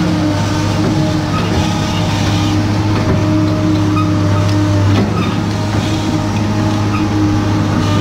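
Diesel engine of a Caterpillar M318C wheeled excavator running with a steady hum while the bucket works a pile of soil.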